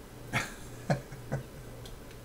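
A man laughing: three short bursts of laughter about half a second apart.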